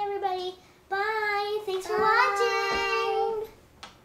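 A young girl's high voice singing a short tune: a brief phrase, then a longer one ending in a long held note that stops about three and a half seconds in.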